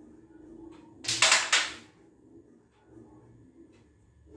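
Carrom striker flicked into a cluster of carrom coins: a quick burst of clattering clacks about a second in, as the striker hits the coins and they scatter and slide across the board, dying away within a second.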